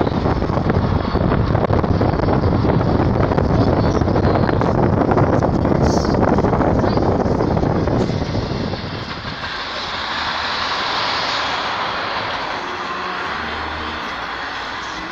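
Car road and wind noise heard from inside the cabin, loud and steady at first, then dropping to a quieter hiss about eight seconds in as the car slows to a stop.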